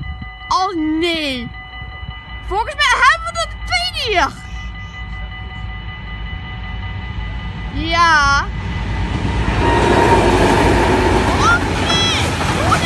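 Level-crossing warning bells ringing steadily while a voice calls out three times. From about nine seconds in, the rumble of an approaching train swells up and drowns the bells as the train passes the crossing.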